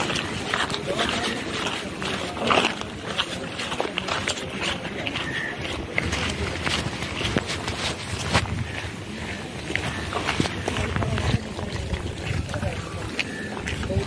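Indistinct voices of people talking, with footsteps and clothing and bag rustle from a group walking along a path.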